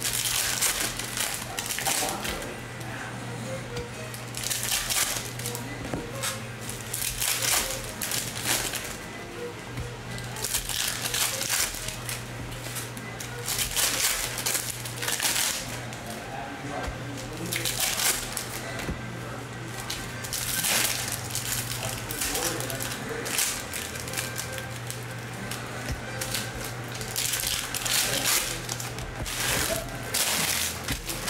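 Foil trading-card pack wrappers crinkling and tearing as packs are ripped open, with the cards rustling as they are shuffled. It comes as a series of short crackly bursts every second or two.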